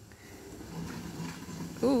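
Ford four-wheel drive's engine running faintly in the distance as it works up a rutted clay track: a low steady hum that slowly grows louder. A voice says "ooh" near the end.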